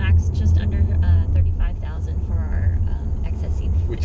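Steady low drone of road and engine noise inside a 2018 Toyota Camry's cabin as it is driven.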